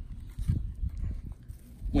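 Wind rumbling on the microphone, with a few soft knocks from a plastic holster being handled.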